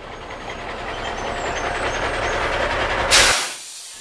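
Sound effect of a camper van pulling up: a rumbling engine and road noise that grows louder, then a short sharp burst of brake hiss about three seconds in as it stops, after which the rumble cuts off.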